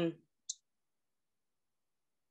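A voice trails off at the start, then a single brief, high click about half a second in; the rest is dead silence.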